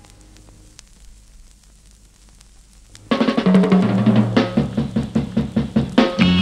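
A quiet gap between tracks of a 1967 Indonesian pop record, then about three seconds in the band starts the next song abruptly with a drum kit and a stepping low bass line.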